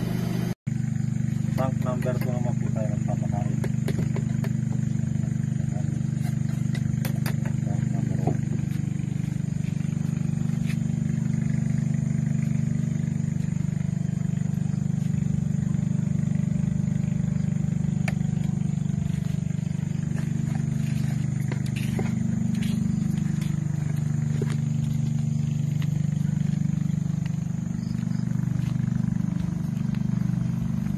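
Steady low machine hum, made of several steady tones, running unbroken throughout. It cuts out for an instant just under a second in. Faint voices come through briefly in the first few seconds.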